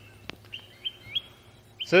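Birds chirping: a few short, high chirps with a sharp click about a third of a second in.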